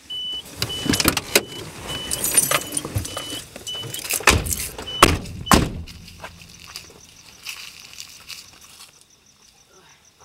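A car's door-open warning chime beeps about twice a second while people climb out of the car, with rustling clothing and clicks and clunks of doors and handles. Two car doors slam about four and five and a half seconds in, and the chime stops around then. A faint steady hum is left inside the empty car.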